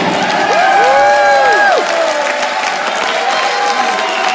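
Theatre audience applauding and cheering as a song ends, with a few long voiced shouts rising and falling about a second in.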